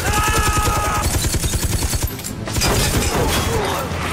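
Machine gun firing in rapid automatic bursts: a long burst of about two seconds, a short break, then another burst. A man yells over the first second of fire.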